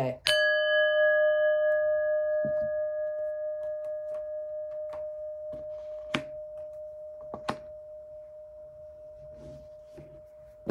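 Metal singing bowl struck once with a wooden mallet, ringing with one long tone that fades slowly with a gentle pulsing, its higher overtones dying away first. A couple of sharp clicks come in the second half.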